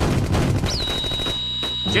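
Cartoon machine-gun fire sound effect: rapid, continuous volleys of shots. A steady high-pitched tone joins about two-thirds of a second in.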